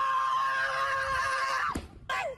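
One long, high-pitched vocal cry, held at a nearly steady pitch, that drops away and stops shortly before the end.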